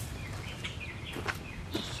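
Faint bird chirps over a steady low background, with a few soft footsteps on dirt and pine needles.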